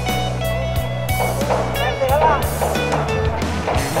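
Background music with guitar, and a singing voice coming in about a second in.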